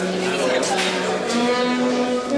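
Live jazz saxophone holding one long low note for a little over a second, then stepping up in pitch. Drum cymbals wash behind it in the small band.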